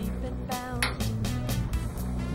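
Background music: a song with a steady bass line.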